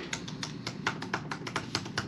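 Typing on a laptop keyboard: a quick, irregular run of key clicks.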